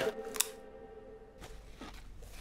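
A single short crunch of a crisp being bitten about half a second in, over a faint held music note that fades out. Then low room tone with a couple of faint small clicks.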